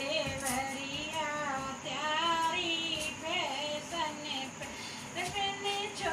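A dehati folk song: a high-pitched female voice singing in Hindi, with musical accompaniment.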